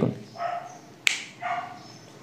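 A dog barking twice, with a sharp click between the two barks.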